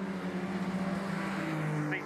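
Junior sedan race car engine running hard on a dirt speedway track, a steady engine note that steps down in pitch about one and a half seconds in.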